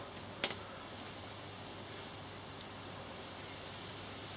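Faint steady mains hum and hiss from the ballasted 240-volt supply driving the red-hot pencil rod at about 6 amps. There is a sharp click about half a second in and a fainter tick past the middle.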